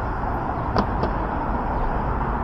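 Steady city road-traffic noise, an even low rumble of passing cars, with two short sharp clicks close together just under a second in.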